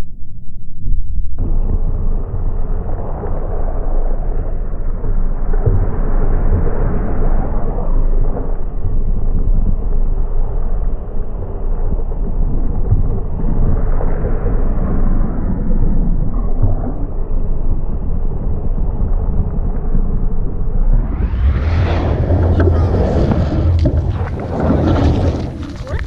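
Wind buffeting a GoPro's microphone as the camera whirls around on a cord swung overhead: a loud, steady rushing rumble that steps up sharply about a second in and turns harsher and hissier near the end.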